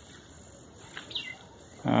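Faint outdoor background with one brief high chirp falling in pitch, just after a small tick about a second in; a man's voice begins at the very end.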